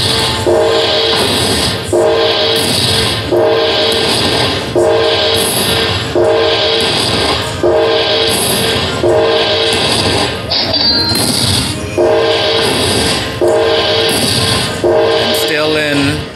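Aristocrat Panda Magic Dragon Link slot machine playing its win-tally jingle, a chiming figure that repeats about every second and a half while the win meter counts up. About ten and a half seconds in, a higher falling tone cuts in once.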